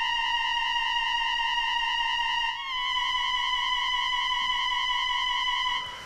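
Granular synthesizer note built from a kitten's meow sample, held as a steady, even-pitched drone with its filter cutoff turned down so it is not too bright. It dips briefly about halfway through as the note restarts, then carries on.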